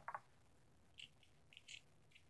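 Near silence: room tone with a few faint, short clicks, about a second in and again near the end.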